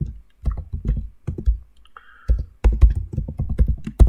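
Typing on a computer keyboard: quick runs of keystrokes with short pauses between them.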